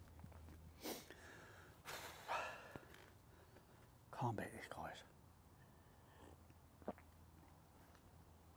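A man's quiet breathy exhales and sighs while eating and drinking, about one and two seconds in, then a short murmured sound about four seconds in and a small click near the end.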